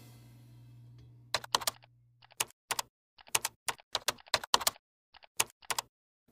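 Computer-keyboard typing sound effect: sharp, irregular key clicks in short runs, starting about a second and a half in, accompanying on-screen text being typed out. A faint low hum fades away during the first two seconds.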